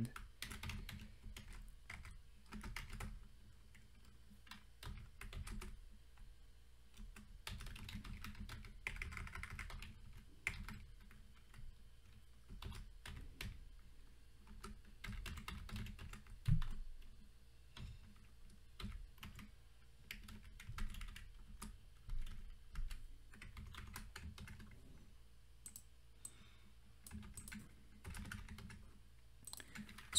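Typing on a computer keyboard: faint, irregular runs of key clicks with short pauses between them.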